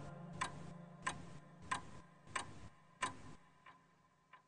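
A clock ticking at an even pace, about three ticks every two seconds, fading away toward the end, over the faint dying tail of a song's accompaniment.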